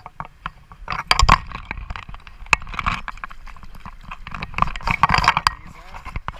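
River water splashing and sloshing close to the microphone, with irregular clicks and knocks, as a caught brown trout is unhooked and let go back into the river. The splashing comes in two busier spells, about a second in and again near the end.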